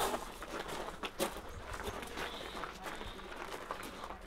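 Faint footsteps on stony ground: a scattered, irregular series of soft crunches and taps.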